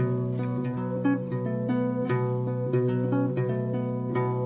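Guitar playing an instrumental passage of a folk song, several plucked notes a second ringing over one another, with no voice.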